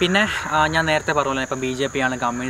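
A man talking, over a steady high-pitched insect drone in the background.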